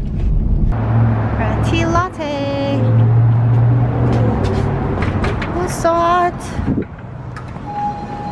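Car cabin road rumble that cuts off after a moment, then a child's voice calling out twice, high-pitched, over a steady low hum.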